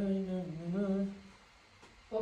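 A man humming one held, slightly wavering note for about a second.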